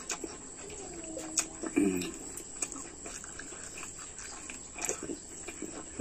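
A man chewing a mouthful of hand-fed rice and curry, with faint mouth clicks and a couple of short closed-mouth hums.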